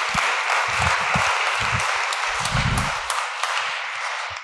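Audience applauding: a dense, steady patter of many hands clapping, tapering off near the end.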